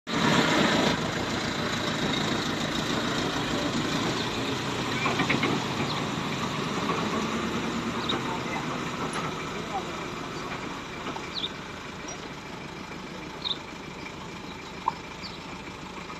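Pickup truck engine idling, with people talking around it.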